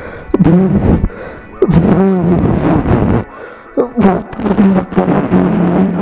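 A man blowing and vocalising without words, in three stretches of voiced breath that rise and fall in pitch, the breath hitting his clip-on microphone.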